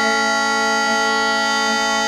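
Bagpipe drones and chanter sounding together as one steady held chord, with no change of note.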